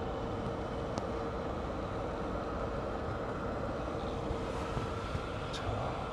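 Steady air-conditioning blower noise inside a parked car's cabin, with a faint steady hum that fades near the end and one small click about a second in.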